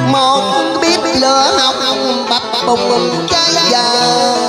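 A man singing a cải lương (Vietnamese traditional opera) excerpt over a backing track of traditional music, with a plucked string instrument bending its notes.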